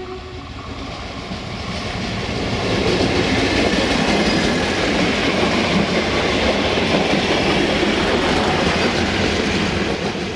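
A VT614 diesel multiple unit passing close by on the rails, its running noise building over the first three seconds into a loud, steady rush of wheels on track.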